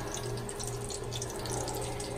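Kitchen tap running steadily into the sink.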